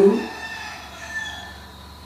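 A man's speech trails off, then a faint, drawn-out high-pitched call sounds in the background, like a distant bird.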